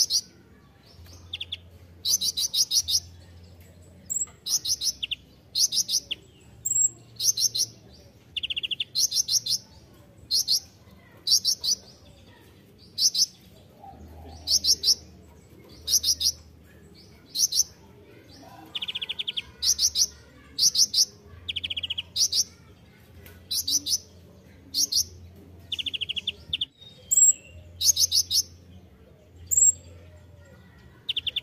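Male kolibri ninja sunbird (Leptocoma) singing vigorously: a steady run of short, high, rapidly trilled phrases about once a second, with some lower, buzzier trills mixed in.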